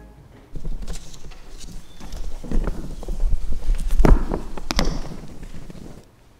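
People sitting down after a hymn: an irregular run of knocks, thumps and shuffling from seats, feet and hymn books, loudest about four seconds in.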